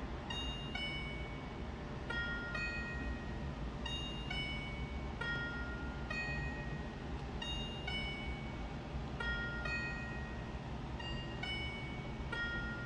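Quiet background music: a slow melody of short, high, bell-like notes.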